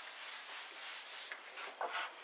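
Terry cloth rubbing oil into a teak tabletop: a steady, soft rubbing noise.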